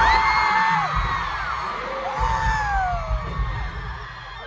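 A single voice holds a high note that then slides down, and does it again about two seconds in, over an arena crowd cheering. Low thumps sound underneath.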